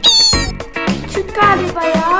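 Upbeat background music with a steady beat, over which a cat meows: a high falling meow right at the start and another wavering meow near the end.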